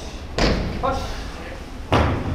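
A group of karateka's bare feet coming down together on tatami mats: two heavy thuds about a second and a half apart, in the rhythm of a knee-raise exercise.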